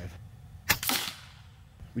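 A single shot from an FX Impact M4 .22-calibre PCP air rifle, a sharp crack about a third of the way in with a brief trailing tail. It is a heavy 25.4-grain pellet fired on the 18-grain tune, clocking only about 770 feet per second, too slow for that pellet.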